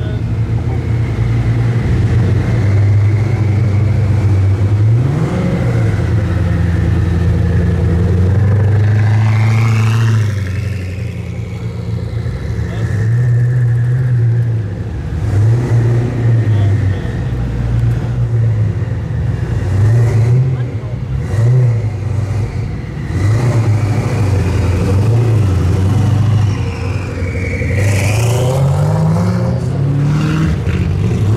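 Koenigsegg twin-turbo V8 running at idle, then blipped repeatedly in short revs as the car pulls away, with a longer rising rev near the end.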